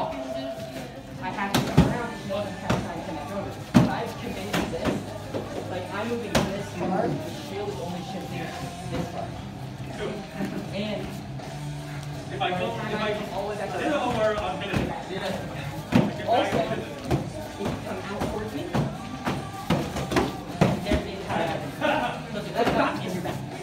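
Practice swords knocking against shields in irregular single strikes, the sharpest about two and four seconds in, over background music and voices.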